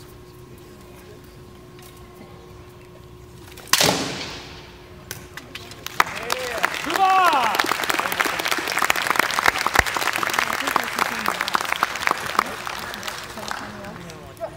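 One loud, sharp crack of a rattan sword landing a blow, ringing briefly, about four seconds in: the blow that ends the bout. About two seconds later the crowd bursts into applause with a few whoops and cheers, which runs about seven seconds and fades near the end.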